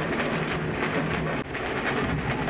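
Steady loud din of a large welcoming crowd, with dense rapid clattering running through it.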